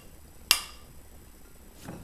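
A single sharp clink of a metal spoon against a glass bowl about half a second in, ringing briefly and fading; otherwise quiet.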